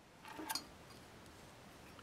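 Faint handling sounds of cloth pickup tape being wrapped around a humbucker's bobbins by hand, with one brief sharper rustle about half a second in, then only a quiet rustle against room tone.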